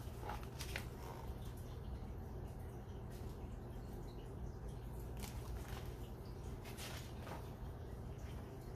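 Faint paper rustles and soft handling sounds of a hardcover picture book, its page turned and the open book lifted and lowered, a few short rustles over a steady low room hum.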